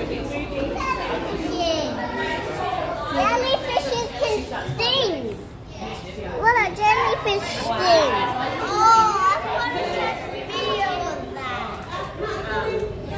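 Children chattering and calling out, several high voices overlapping, with high rising and falling squeals that are loudest in the middle stretch.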